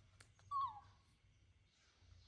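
Baby macaque giving one short, falling squeak about half a second in, preceded by a couple of faint clicks.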